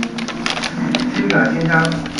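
Crinkly plastic bag crackling in rapid, irregular clicks as two kittens wrestle in and on it.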